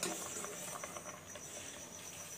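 A steel ladle stirring thick payasa in a stainless-steel pot: faint scraping with a scatter of light clicks of metal on metal.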